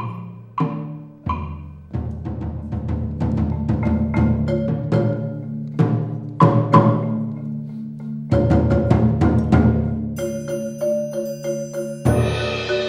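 Percussion quartet playing marimba and other mallet percussion with low, ringing drum-like strokes. It opens with a few spaced strokes, then quickens into dense, rapid notes. High ringing metallic tones join near the end.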